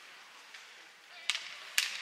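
Two sharp clacks of hockey sticks hitting the puck on the ice, about half a second apart in the second half, over a faint ice-rink hum.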